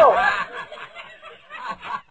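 Stifled snickering laughter, loud at first and trailing off into faint short chuckles.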